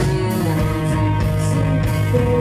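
A live rock band playing loud: electric guitars over bass and drums, recorded from within the audience.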